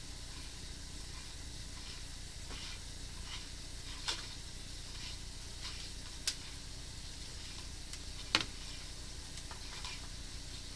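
Steady crackling hiss while a sewer inspection camera on its push cable is fed along the sewer line, with three sharp clicks spaced about two seconds apart, the last the loudest.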